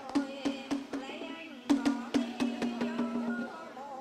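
Quick stick strokes on a traditional Vietnamese barrel drum, about four a second, with sharp wooden clacks. They run under a held sung note and stop shortly before the end.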